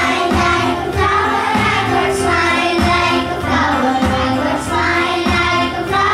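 A group of young children singing a song together over backing music with a steady beat.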